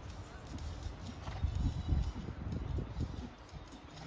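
Hoofbeats of a dressage horse trotting on a sand arena: a string of dull low thuds, loudest around the middle.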